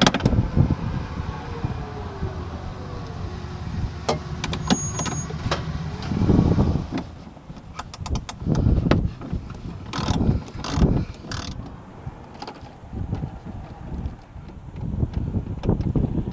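Socket ratchet clicking in short runs, with metal clunks of tool and hand work on the bolts of a Harley-Davidson Road Glide's front fairing. A low vehicle hum with a slowly falling tone runs underneath for the first several seconds.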